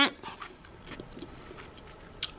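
Quiet room with a few faint, short clicks and ticks.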